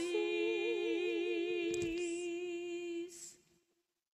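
Two women's voices singing unaccompanied, holding the long final note of a hymn-tune canticle together, one steady and the other with a wide vibrato, with a soft knock about two seconds in; the note ends about three and a half seconds in.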